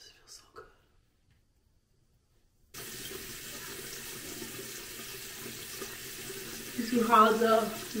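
Bathroom sink tap running in a steady stream, switching on suddenly about a third of the way in after near silence.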